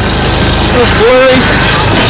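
EZGO golf cart's engine running steadily as the cart drives along, with a broad rush of driving noise.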